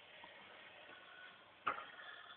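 Faint, even background noise with one short, sharp click near the end.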